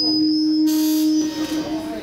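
Microphone feedback ringing through the PA: a loud, steady low tone with a high whistle above it. The whistle stops under a second in and the low tone fades near the end, a sign of the faulty stage microphone being worked on.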